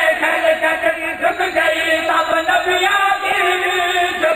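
A man's voice chanting a melodic religious recitation into a microphone, drawing out long held notes.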